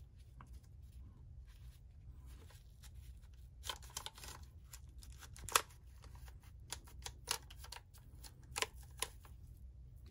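A paper towel rubbing and scrubbing over the plastic keys and case of a Panasonic 850 calculator, with irregular scuffs and clicks that come thickest in the second half, over a steady low hum.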